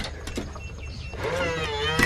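Electronic keypad deadbolt being unlocked: a click and a few short beeps as the code is keyed in, then its motor whirs as the bolt draws back.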